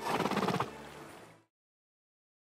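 A cartoon horse's short, fluttering nicker that drops in pitch, fading away; the soundtrack cuts to silence about a second and a half in.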